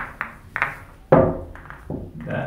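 Pool balls clacking against one another as they are gathered and packed into the rack: about six sharp, irregularly spaced clacks.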